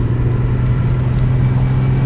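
Interior noise of a moving car: a steady low engine and road drone heard from inside the cabin.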